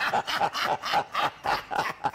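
A man's rapid run of short, grunt-like vocal bursts, about five a second, during a playful scuffle.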